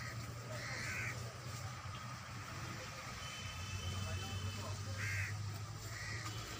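Short bird calls, once about a second in and again about five seconds in, over a steady low hum.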